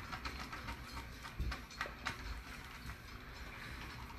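Faint rustling with scattered small clicks and knocks, the handling noise of a handheld phone being moved about, over low room noise.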